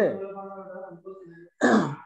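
A man's voice drawing out the end of a question into one held vowel for about a second, then a short, rough throat clear just before speech resumes.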